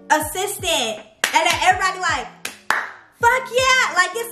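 A woman's animated voice over a hip-hop beat with repeated downward-sliding bass notes, with a few sharp hand claps around the middle.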